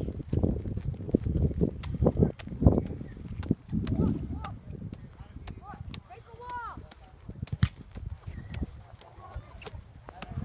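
Three soccer balls being juggled by hand: irregular slaps and thuds of the balls landing in and leaving the hands, several a second, heaviest in the first half.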